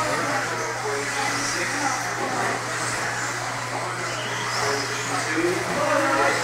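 Electric 1/10-scale 2WD modified RC buggies racing on an indoor dirt track, their motors whining in short rising and falling sweeps as they accelerate and brake, over a steady low hum.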